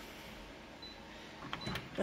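Colour office photocopier starting a copy job: a low, steady mechanical whirr of its motors.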